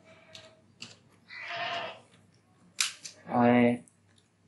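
A few scattered computer keyboard clicks, a short breathy hiss in the middle, and a brief held voice sound near the end, which is the loudest thing here.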